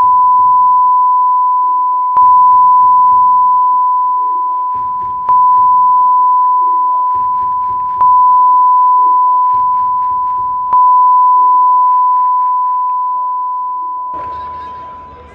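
A steady high-pitched censor bleep tone covers the crowd's chanting. It jumps louder four times, roughly every two and a half to three seconds, and fades slowly in between, with the stadium crowd's chanting faint beneath it.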